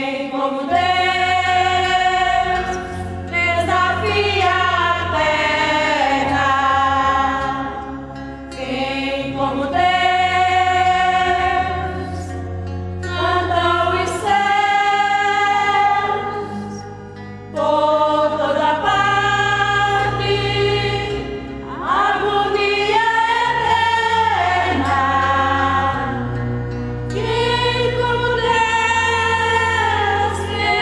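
Women's church choir singing a Catholic hymn in Latin. The sung chords are held in long phrases, with short breaks between them, the deepest about two-thirds of the way through.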